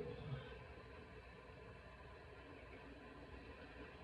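Near silence: faint room tone, after the tail of a short vocal "oh" in the first half-second.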